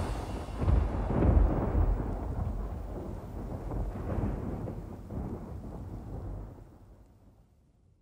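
Deep rumbling noise with a few swells, dying away to silence near the end.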